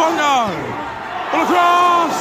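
A spectator shouting in a football crowd: a yell that falls in pitch, then a long call held at one pitch near the end, over crowd noise.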